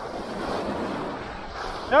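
Shore surf washing in: a rush of noise that comes in suddenly and runs on for nearly two seconds before easing off.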